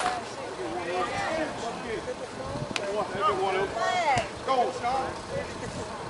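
Several people's voices talking and calling out across a softball field, overlapping. There is a sharp knock right at the start and two lighter clicks later on.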